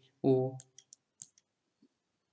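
A brief spoken syllable, then a few faint, scattered clicks.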